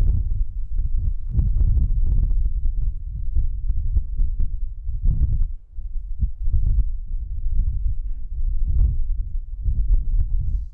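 Wind buffeting the microphone: a low, uneven rumble that swells and dips, with a brief drop about five and a half seconds in.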